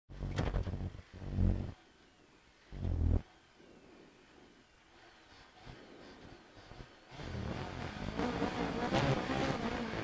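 Renault Clio R3 rally car engine revved in short blips twice, then idling quietly, then held at high revs from about seven seconds in, as the car waits at the stage start ready to launch.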